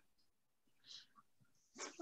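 Near silence: a pause on a noise-suppressed call, broken only by one faint, brief high-pitched sound about a second in.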